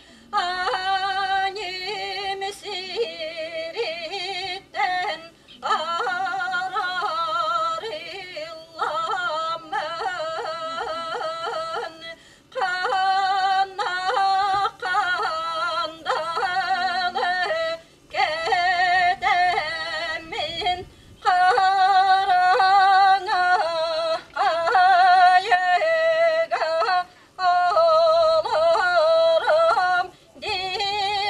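A woman singing solo in traditional Yakut style, in phrases of a few seconds with short breaks for breath. The voice is ornamented with quick warbling turns and yodel-like breaks.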